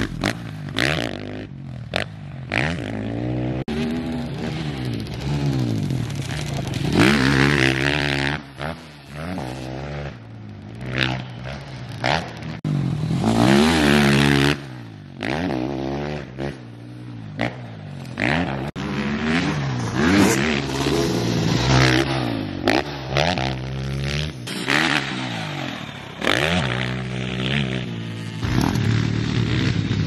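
Dirt bike engine revving up and dropping off again and again as the rider accelerates around a motocross track, with the sound breaking off abruptly several times.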